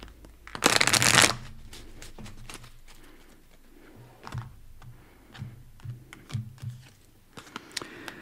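A deck of round tarot cards shuffled by hand: one loud burst of shuffling about half a second in, then soft taps and clicks as the cards are handled and laid down.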